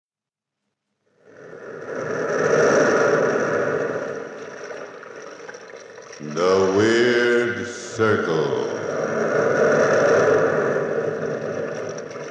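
Radio sound effect of sea surf: waves rushing in and falling away in two long swells, with a wailing, voice-like sound that rises and bends in pitch between them.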